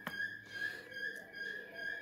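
Quiet room tone with a steady high-pitched whine and a few faint clicks.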